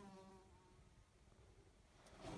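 Near silence, with a faint buzz steady in pitch that fades out in the first half second.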